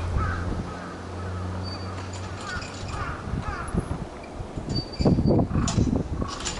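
Crows cawing, a string of short harsh calls, over a steady low hum. About five seconds in there is a louder burst of low rumbling noise with a couple of sharp knocks.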